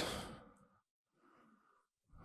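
A short breathy exhale into the microphone, like a sigh, fading out within about half a second, followed by near silence.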